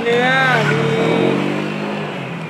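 A man's voice stretching out a word, over traffic: a road vehicle's engine passing on the street, its note falling slowly.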